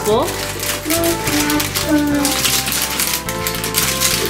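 Background music with held notes and a short melody, over rapid crinkling and clicking of wrapped sweets being handled in a paper Christmas candy boot.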